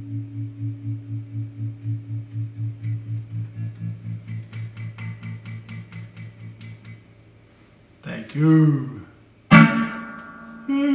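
Electric guitar holding a low note that pulses about five times a second and fades away over about seven seconds, with a run of light clicks partway through. A short burst of voice follows, then a loud chord is struck near the end.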